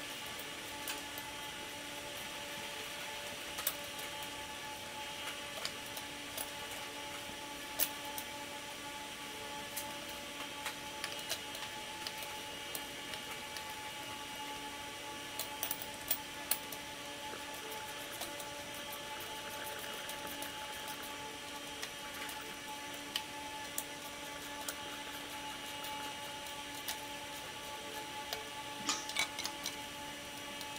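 Scattered small metallic clicks and taps as bolts and nuts are fitted through a bicycle's rear sprocket, over a steady mechanical hum.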